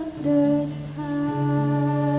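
Flute playing a slow, sustained melody with a gentle vibrato, over classical guitar accompaniment.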